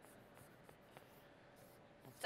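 Near silence, with the faint strokes of a felt-tip marker drawing lines on a paper pad.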